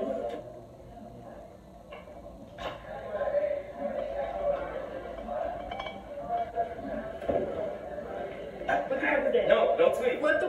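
Low, indistinct voices, with a few light clicks and knocks.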